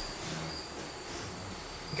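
Faint, steady insect chirping like crickets, a thin high pulsing note repeating over a quiet room.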